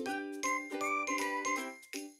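Bright, tinkling intro music jingle: quick bell-like notes about four a second over a sustained chord, with a short melody rising and falling, cutting off abruptly just before the end.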